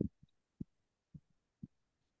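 A handful of soft, low thumps at uneven intervals, the first the loudest and the rest fading.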